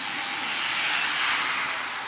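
A road bike descending past at speed: a rushing hiss of tyres and air that swells about a second in as it goes by, then eases.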